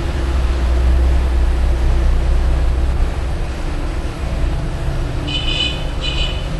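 A loud, steady low rumble, with a brief high-pitched tone near the end.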